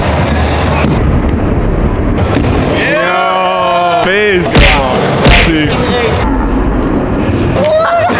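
Stunt scooter rolling on the concrete of an indoor skatepark, with a steady low rumble. About three seconds in a person lets out a long held shout, and a little after it come two heavy thumps about a second apart.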